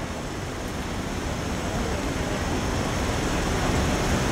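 Steady outdoor background noise, a low rumble with hiss, growing slightly louder through the pause.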